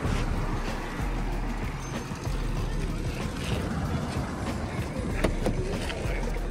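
Steady road traffic noise from cars and motorcycles passing along a street.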